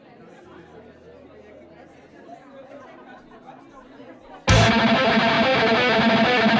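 Quiet crowd chatter, then about four and a half seconds in, a heavily distorted electric guitar comes in loud, playing metal.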